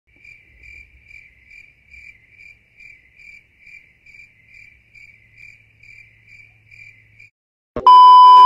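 Cricket-like chirping: a faint high chirp repeated evenly about two and a half times a second, stopping about seven seconds in. Just before the end a loud steady beep cuts in.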